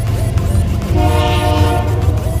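Double-stack container cars rolling past with a steady low rumble, and a train horn chord held for just under a second, starting about a second in.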